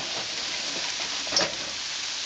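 Julienned carrots and other root vegetables sizzling in hot oil in a wok while being stirred with a wooden spatula. The hiss is steady, with one sharper click about one and a half seconds in.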